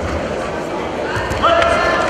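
Voices calling out in a large sports hall during a judo throw, with a loud rising shout about a second and a half in. Just before it comes a dull thump, as a judoka is thrown onto the tatami mat.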